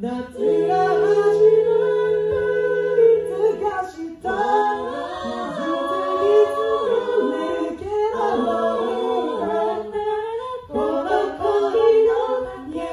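Five-voice a cappella group singing in harmony through microphones, with no instruments. A low bass note is held under sustained chords for the first few seconds, then after a brief break about four seconds in the voices move through changing chords.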